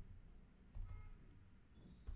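A few faint computer-keyboard keystrokes, soft clicks against near silence.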